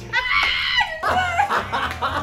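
A dog's high-pitched whining yelp, dropped in as an editing sound effect, lasting about a second and ending in a falling whine. Laughter follows over background music with a steady low beat.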